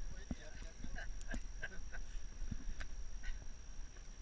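Scattered light knocks and scrapes of movement on the rock, with wind rumbling on the microphone and a steady faint high whine.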